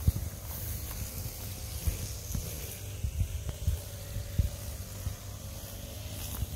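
Footsteps walking on a grassy path, irregular low thuds, over a steady high hiss.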